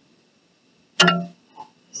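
A single sharp clink about a second in, a hard object knocked while painting tools are handled, ringing briefly before it fades, followed by a faint tap.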